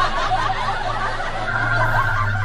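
Several people laughing under their breath, snickering and chuckling, over a steady low hum.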